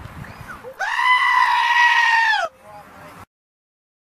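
Goat screaming: one long, loud, human-like yell lasting about a second and a half, held on one pitch and cut off suddenly.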